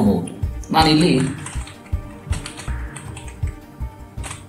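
Computer keyboard being typed on in quick, irregular keystrokes. A short burst of speech comes about a second in.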